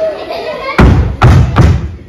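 Three loud, heavy thumps in quick succession, about 0.4 s apart, starting nearly a second in, after a short stretch of voice.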